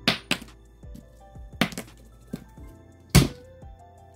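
Soft background music with a few sharp knocks and taps of a scratch card and coin being handled on a tabletop, the loudest knock about three seconds in.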